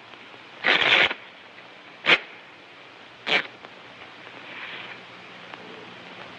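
A deck of playing cards being handled: a short riffle about a second in, then two sharp flicks of the cards about a second apart, over a steady low hum and hiss of an old film soundtrack.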